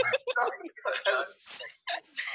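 A man laughing hard in a run of short, broken bursts.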